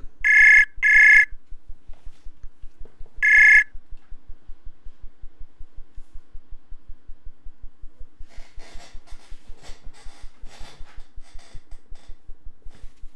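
Web-chat audio call ringing as an outgoing call is placed: two short electronic rings in quick succession right at the start, then a third about three seconds in. A faint, rapid, even ticking runs underneath.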